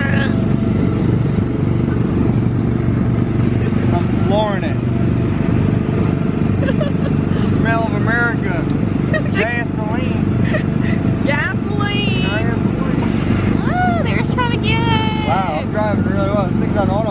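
Small gasoline engine of a Tomorrowland Speedway ride car running steadily as the car drives along the track, with voices over it.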